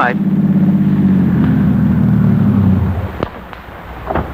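Radio-drama sound effect of a car engine running steadily, then stopping about three seconds in as the car pulls up. A few faint clicks follow.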